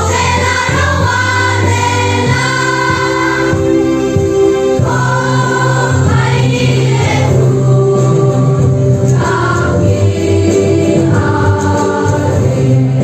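A choir of children and young people singing, holding long notes that change every second or two over steady low bass notes.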